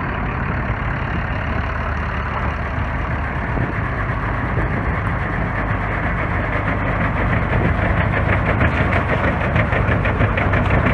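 Engine-driven dryblower running: a steady engine and blower fan, with a dense rush of air and dust. Toward the end it grows slightly louder with a fast, even pulsing. The owner says its drive belt is slipping.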